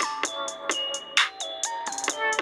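Background music: an electronic pop track of short, bright notes stepping up and down over a regular beat of high, hissy hits.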